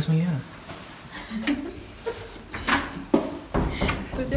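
Sharp knocks and then low thuds from a heavy door being handled and pushed open, with brief voices in between.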